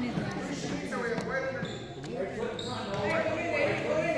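A basketball bouncing on a hardwood gym floor, under indistinct voices carrying through the large hall.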